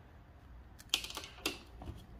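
Light clicks and taps of a handheld wire stripping and crimping tool being handled as the wire is set back in its jaws: a short cluster about a second in, then two more single clicks.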